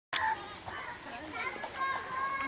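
Several overlapping voices, children among them, calling out and chattering in the background, opening with a brief click and a loud call right at the start.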